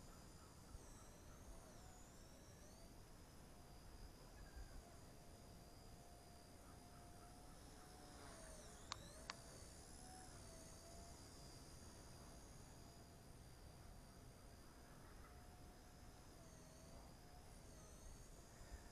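Faint, distant whine of a Blade Nano S2 micro RC helicopter's electric motors, its pitch wavering up and down as the helicopter flies. There are two short clicks about halfway through.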